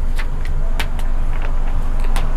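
Pages of a paper textbook being turned, a few short rustles and clicks, over a steady low rumble.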